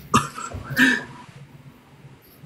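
A man coughing twice, two short coughs about two-thirds of a second apart.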